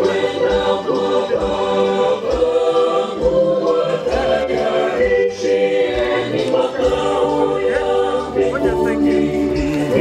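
A choir singing without accompaniment, many voices holding long notes together.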